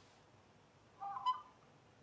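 A short, high, beep-like chirp of about half a second, about a second in, over a faint low room hum.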